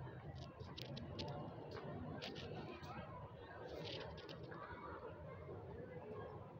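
Faint outdoor street ambience: a low steady rumble with indistinct distant voices and scattered small clicks.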